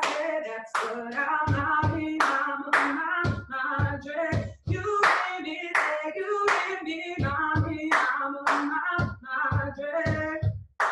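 A woman singing while keeping a steady rhythm of about two strikes a second with hand claps and hard-soled shoe stamps on a hollow wooden tarima platform.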